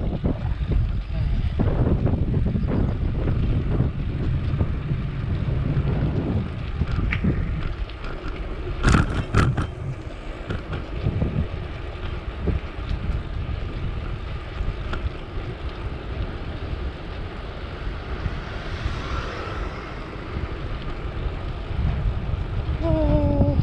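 Wind rushing over the camera microphone while cycling, a steady low rumble that eases after the first few seconds, with a couple of sharp clicks about nine seconds in.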